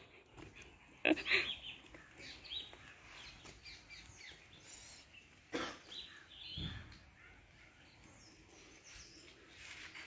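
Faint, scattered bird calls over a quiet outdoor background, with a couple of brief thumps a little past halfway.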